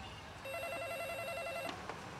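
A telephone ringing: one electronic trilling ring, a fast warble a little over a second long, then a faint click.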